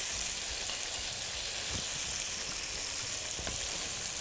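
Thick tomato slices frying in a pan of hot oil with garlic, peppers and vinegar, a steady sizzle.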